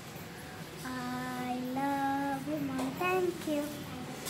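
A young child singing unaccompanied, holding several long notes one after another from about a second in.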